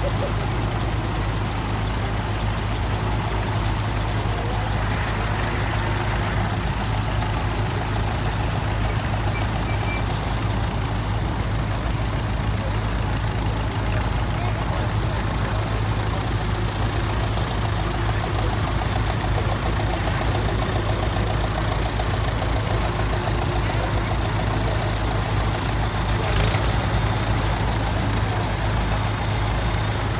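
Several vintage tractor engines running steadily at low speed as small grey Ferguson tractors drive slowly past in a line, a continuous low drone.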